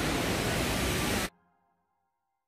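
Steady rushing of water from the river falls that cuts off abruptly just over a second in.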